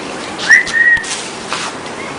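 A short whistle: one high note that slides up quickly and holds for about half a second.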